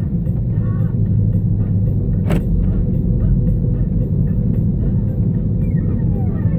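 Car cabin road noise while driving: a steady low rumble of engine and tyres, with one sharp click about two seconds in.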